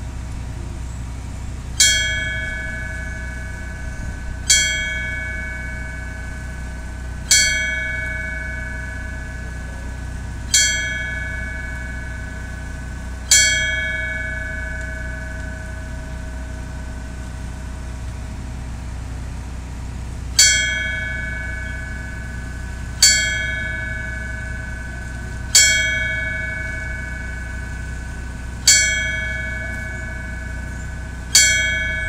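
Memorial fire bell struck five times, about every three seconds, each strike ringing and fading away; after a pause of about seven seconds it is struck four more times. It is the final bell ceremony's tolling in sets of five, which signifies that a firefighter has completed their task.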